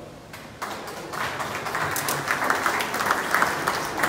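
Audience clapping in a large hall, building up about half a second in and carrying on as steady applause.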